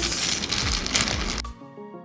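Plastic wrapping crinkling and crackling as it is handled, cut off suddenly about one and a half seconds in, leaving background music with a few struck notes.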